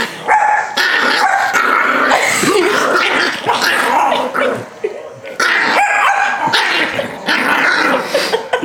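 Yorkshire terrier puppy growling and barking almost without pause while being tickled and held on its back, with a short break about five seconds in.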